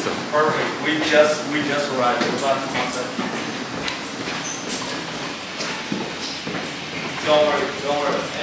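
Untranscribed voices of people talking close by, with a quieter stretch in the middle holding scattered short knocks.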